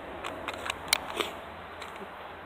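A handgun being handled as it is drawn from a waist holster: about five light clicks and rustles, the sharpest about a second in.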